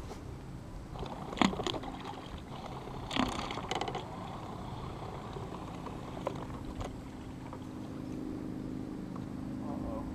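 A boat motor running with a steady low hum, which grows stronger in the second half. Several sharp knocks come in the first four seconds.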